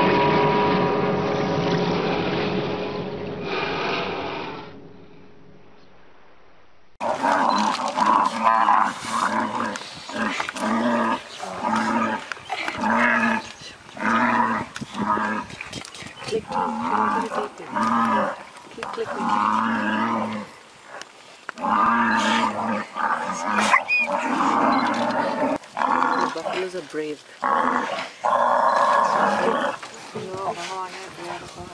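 A sound with held tones fades out over the first few seconds. After a short lull, a tiger growls while attacking a buffalo, and people's excited voices run over it.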